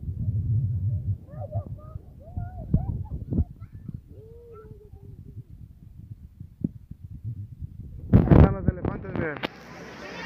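Faint, short high-pitched calls of children's voices over a low rumble, then a loud burst of voices about eight seconds in.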